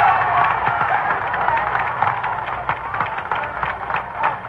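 Rally crowd applauding and cheering after a line of the speech, many hands clapping, the noise slowly dying down.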